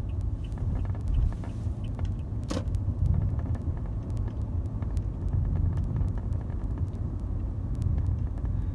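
Car cabin noise while driving: a steady low engine and road rumble, with scattered faint clicks and one brief louder knock about two and a half seconds in.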